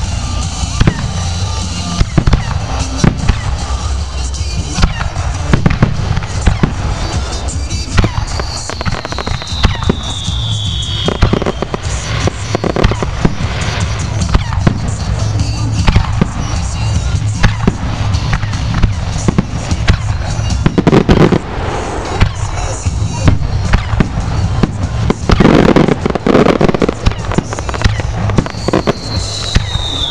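A fireworks display: a continuous, rapid barrage of aerial shells bursting with sharp bangs, heaviest about two-thirds of the way in. A falling whistle-like tone is heard twice, about a third of the way in and again at the very end.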